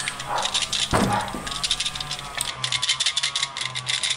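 Worn clutch basket of a 2006 Suzuki SV1000 rattling as it is rocked by hand, a fast run of clicks that is densest in the second half. The sound comes from the play between the basket's gear and its damper springs, the wear behind the bike's clutch noise and vibration.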